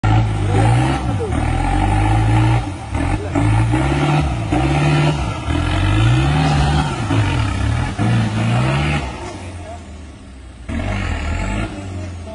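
Off-road 4x4's diesel engine revved hard under load as it claws up a muddy bank, the revs rising and falling in repeated surges, with thick black smoke marking heavy fuelling. The engine eases off about nine seconds in, then gives one more short burst near the end.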